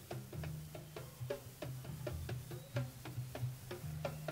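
Soft live-band playing on a concert soundboard tape: light, clicky drum or percussion taps several times a second over quiet, held bass guitar notes.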